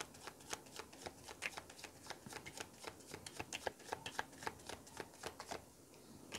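Deck of tarot cards shuffled by hand, hand to hand: a fast, irregular run of soft card clicks and flicks, several a second, that stops near the end.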